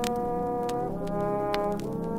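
Solo trombone with a concert band's brass playing long held notes, the pitch moving to new notes about a second in and again near the end. The recording comes off an old vinyl record, with a few sharp pops and clicks over the music.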